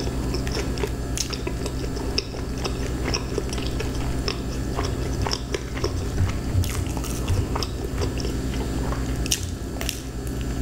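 Close-miked chewing of BBQ pizza, with irregular small mouth clicks, over a steady low hum.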